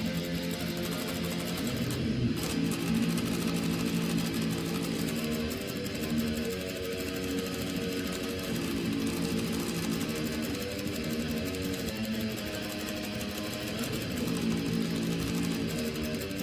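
Electric guitar being played slowly: sustained chords or notes, each held for a second or two before moving to the next.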